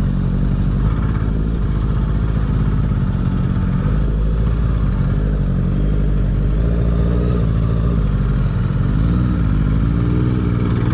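Motorcycle engine running at low, fairly steady revs while riding slowly on a dirt track. The engine pitch rises and falls briefly near the end.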